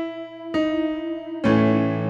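Electronic keyboard in a piano voice playing the song's introduction: a single sustained E, another note added about half a second in, then a full A major chord with a low bass note struck about a second and a half in.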